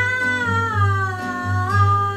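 A woman singing one high, strained held note that slides slowly downward and steps back up near the end, over a strummed classical guitar.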